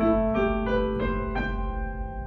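Pearl River PRK300 digital piano playing a short phrase of about five notes that ring on and fade, with its brilliance (tone brightness) setting turned up.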